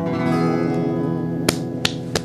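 Acoustic guitar's last chord of a song ringing out and slowly fading, with a sharp click about a second and a half in.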